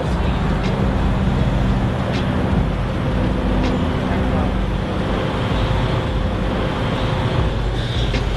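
Steady outdoor road traffic noise with a low, even hum.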